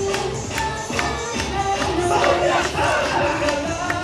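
Yosakoi dance music over loudspeakers with a steady, quick beat, and about halfway through the dancers shout together.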